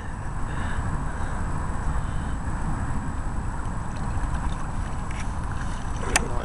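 Steady rumbling wind noise on the microphone, mixed with water sloshing at the bank around a common carp held in the shallow margin.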